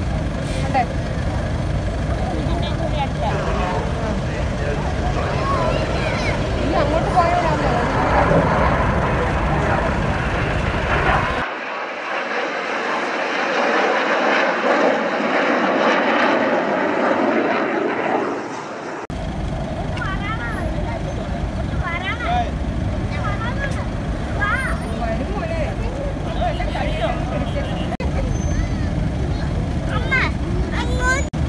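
Jet aircraft of an air display flying over, a steady rushing engine noise with a low rumble, with spectators' voices around. For several seconds in the middle the rumble drops away and the jet noise sounds thinner.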